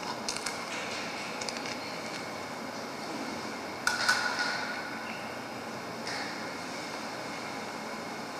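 Quiet handling of metal altar vessels: a few small clicks, then one sharp metallic clink of the chalice about four seconds in that rings on briefly as a single tone.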